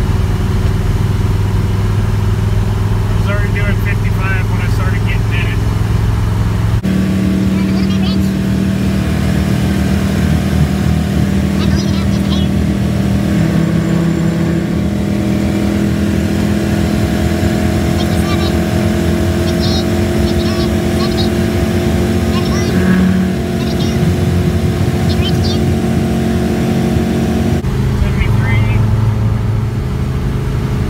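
A wood-gas-fuelled pickup engine running under load at highway speed, heard from inside the cab together with road noise. The engine note holds steady, then shifts abruptly about a quarter of the way in and again near the end.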